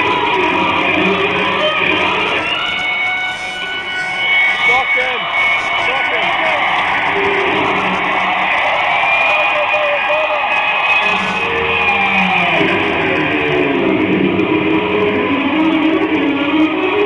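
Live electric guitar solo, with long held notes and notes bent and sliding in pitch.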